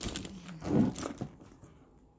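Handling noise from a patent leather handbag being turned and opened close to the microphone: rubbing and light knocks, loudest a little under a second in, followed by a couple of small clicks.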